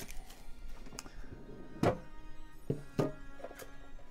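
Background music with several knocks and clunks from a metal Pokémon card tin being handled and its lid opened. The loudest knock comes about two seconds in.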